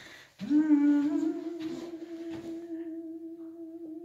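A woman humming one long, steady note, sliding up into it about half a second in.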